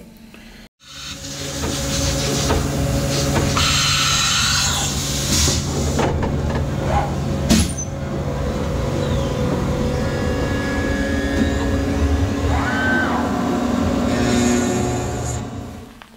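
A CNC machine milling circlip extraction recesses into a forged aluminium piston, starting about a second in: steady spindle and cutter noise with held tones. A brief whine rises and falls near the end.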